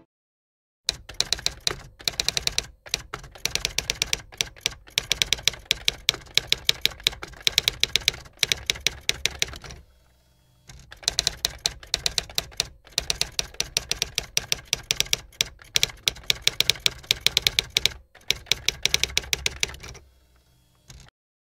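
Typewriter sound effect: quick runs of key strikes with short breaks between them, which stop for about a second midway and then start again.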